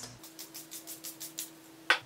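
Milani Make It Last setting spray bottle being handled: a quick run of about a dozen light, high clicks over a little more than a second, then one sharper click near the end.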